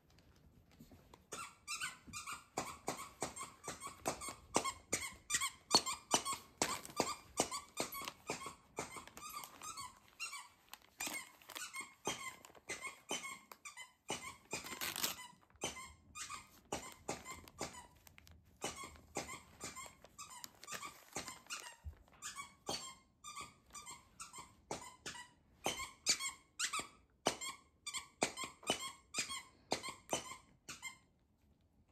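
A squeaky dog toy squeaked over and over as a dog chews it: quick squeaks several a second in long runs with short pauses.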